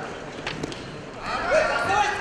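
Men's voices shouting in a large sports hall, with a single thump about half a second in.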